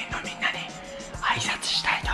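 A man whispering over background music.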